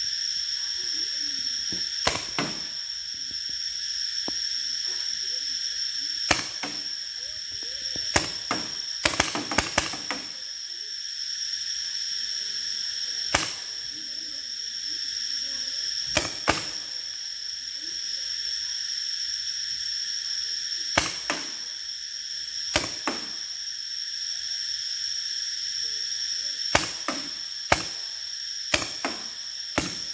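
Paintball gun firing single sharp pops every few seconds, some in quick pairs, with a rapid run of several shots about nine seconds in. Under it runs a steady high-pitched drone of insects.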